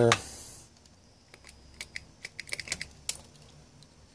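A short hiss from a DeoxIT D5 pump spray bottle, then a run of about a dozen irregular plastic clicks as the pump top is pressed over and over. The pump is failing to prime.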